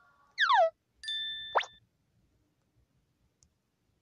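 Cartoon sound effects: a short falling whistle-like slide, then half a second later a held ding-like tone cut off by a quick rising sweep. After that it is nearly silent.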